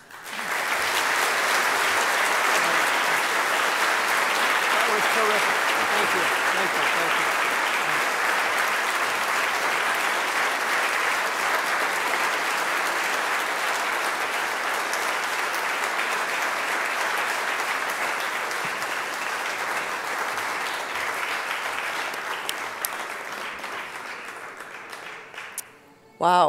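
Audience applauding long and steadily, dying away near the end.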